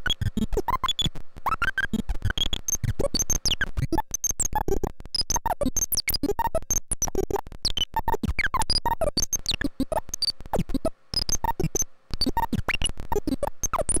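Homemade CMOS synthesizer built around a CD4023 pulse-width-modulated oscillator, putting out a fast, irregular stream of clicks and short tones whose pitch jumps about unpredictably, with a few falling glides. The pitch is stepped by a 4051 capacitor switcher and a 4-bit pseudo-random generator feeding the oscillator's feedback. The sound drops out briefly twice near the end.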